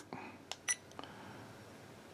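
Small plastic buttons on a budget 4K action camera clicked a few times in quick succession, two of the presses with short high beeps, as the camera is switched from video mode to photo mode. The clicks are faint.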